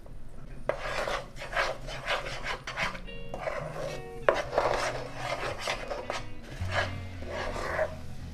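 Metal spoon scraping and stirring thick jackfruit-seed paste around a nonstick pan: a run of rasping strokes a few per second, a pause of about a second a little before halfway, then the strokes resume.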